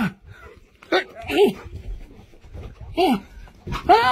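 German Wirehaired Pointer giving short barks and yelps, about five of them, each rising then falling in pitch, while tugging at a person's trousers in play.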